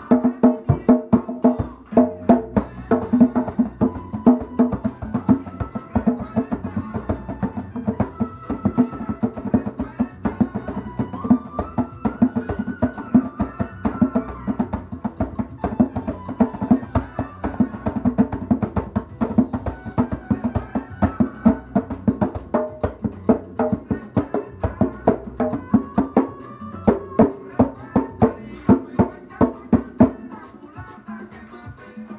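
Hand drumming on a tall rope-tuned drum, a steady stream of sharp open and slap strokes, played along with a recorded Cuban band track whose sustained melodic lines sound underneath.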